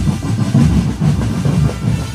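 Marching drum band playing loudly, with deep bass drum booms over a dense wash of percussion.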